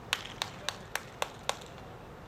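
Six sharp clicks in an even rhythm, a little under four a second, stopping about halfway through.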